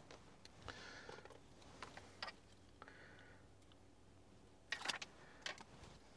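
Faint clicks and rustling of a GPS antenna and its cable being handled and fed up behind a car's plastic dashboard trim, with a short cluster of louder clicks near the end.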